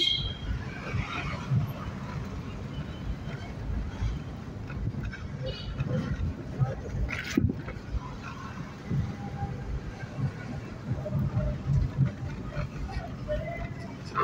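Low rumble of a car driving slowly, heard from inside the car, with faint voices and street noise and a sharp click about seven seconds in.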